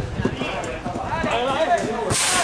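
Untranscribed voices of players and spectators calling out at an outdoor football match, over a run of soft, irregular low knocks.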